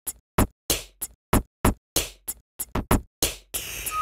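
A drum-machine beat of short, punchy drum samples played back from a saved sequence in the Koala Sampler app at 95 BPM, about three hits a second, each dying away to silence before the next.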